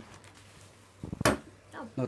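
A brief sharp clatter of a few clicks and a knock about a second in, from handling the parts of a photo-studio light-stand and softbox kit as it is unpacked; otherwise faint handling noise.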